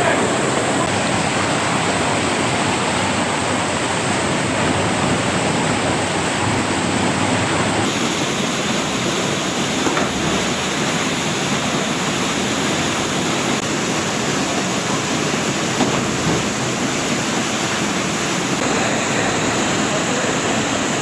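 Steady rushing of a waterfall and cascading mountain stream in a narrow rock gorge. Its tone shifts slightly about eight seconds in and again near the end.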